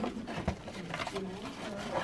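Faint voices in the background, with a couple of light clicks and rustles as the cardboard kit box and its paper decal sheet are handled.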